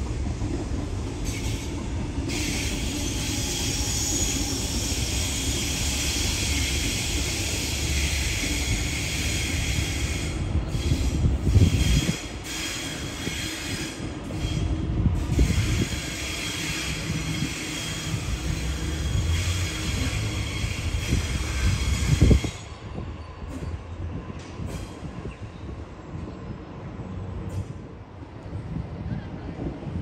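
Sydney Trains double-deck electric train passing, with a steady rumble and a high squeal from its wheels on the rails. The squeal fades about halfway through, and the noise drops off suddenly near the end.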